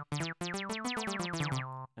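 Synth bass from the Presence '303 Saws' preset, played as a quick run of short notes. Each note starts bright and quickly dulls.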